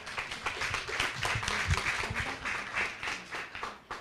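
Audience applauding: many hands clapping together, dying away near the end.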